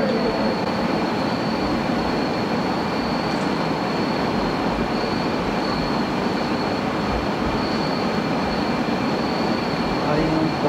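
Steady rushing background noise with no break, with a faint high-pitched whine held steady through it.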